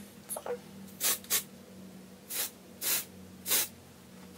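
Aerosol dry shampoo can (Not Your Mother's Beach Babe texturizing) spraying into hair in five short hissing bursts, each a fraction of a second: two close together about a second in, then three spaced about half a second apart.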